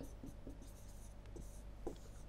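Faint scratching and light tapping of a stylus writing a word on a pen tablet.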